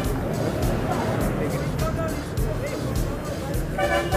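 Busy street noise, traffic rumble and a crowd talking, under background music.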